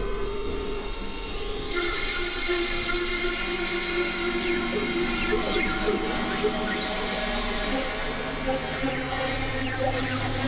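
Experimental electronic drones from Novation Supernova II and Korg microKORG XL synthesizers: several steady held tones layered over a grainy, crackling noise texture. A higher cluster of tones comes in about two seconds in, and a low tone enters near the end.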